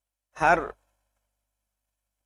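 One short word spoken by a man, about half a second in; the rest is silence.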